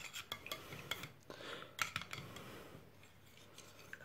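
A metal spoon stirring honey and carom seeds in a steel tumbler: faint, irregular scraping with light clinks of spoon against the steel, dying away in the last second or so.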